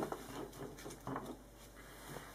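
Faint handling sounds of a stack of Pokémon trading cards being set down on a table: a sharper tap at the start, then a few soft taps and rustles.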